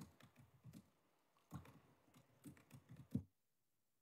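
Faint typing and clicking on a laptop keyboard picked up by a desk microphone, then the sound cuts out to dead silence a little over three seconds in, as the microphone is switched off.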